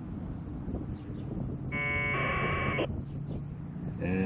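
A VHF packet radio data burst, about a second long: the buzzy two-tone squawk of 1200-baud AFSK from the Icom IC-705's speaker as the packet BBS node answers. A faint low hum runs underneath.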